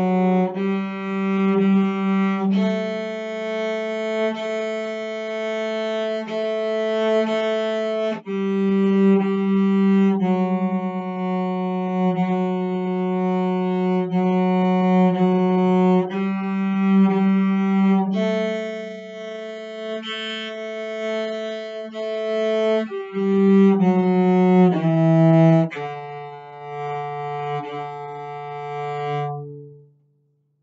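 Cello played with the bow in long, slow half notes, stepping up and down through F sharp, G and A. A few quicker notes come near the end, then a lower note is held to finish.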